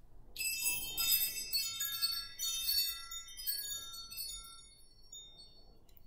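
High, bright chimes ringing: a cluster of clear tones starts about half a second in, more strikes follow over the next few seconds, and the tones fade away near the end.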